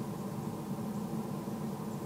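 Steady low background noise with no distinct sounds in it.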